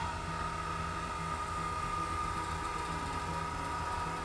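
Vacuum pump switching on and running steadily, a high whine over a low hum, as it pumps the air out of the chamber.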